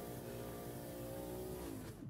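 A quiet, steady hum made of several evenly spaced tones, which sags slightly in pitch near the end and then cuts off.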